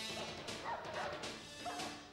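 Dramatic background music, with a dog barking several times in short, quick calls over it.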